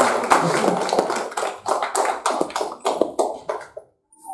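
A small group clapping hands, scattered and irregular, thinning out and dying away near the end.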